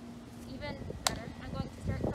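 Indistinct voices talking in short bursts that carry no clear words, with a single sharp click or knock about halfway through.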